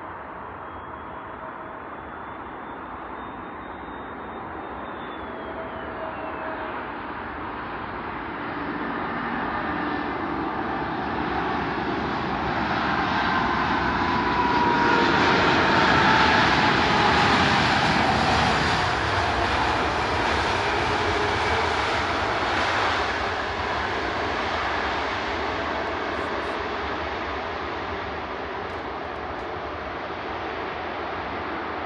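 Jet engines of an SAS Airbus A320neo airliner landing. The noise grows steadily to a loud peak about halfway through as the plane passes, with a whine that falls in pitch, then fades away.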